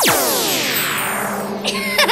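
Synthesized magic-spell sound effect: a quick downward swoosh, then a shimmering cascade of many falling tones that fades over about a second and a half.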